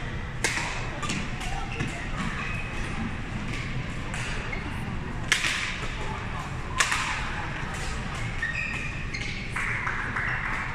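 Badminton rackets striking a shuttlecock in a doubles rally: sharp hits about half a second in, at about five seconds and, loudest, a second and a half later, with fainter hits between.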